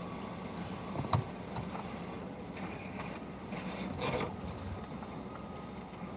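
Steady low hum of an idling car, with one sharp knock about a second in and a brief scuffing sound around four seconds in.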